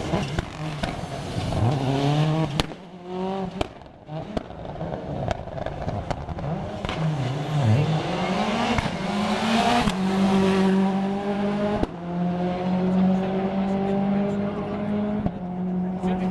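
Peugeot 206 rally car engine at racing revs, pitch climbing and dropping again and again through gear changes and lifts as it passes and corners. It then holds a long, steadier high note in the second half, with a few sharp clicks along the way.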